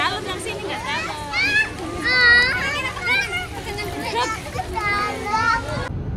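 Young children chattering and calling out in high voices while playing in the water.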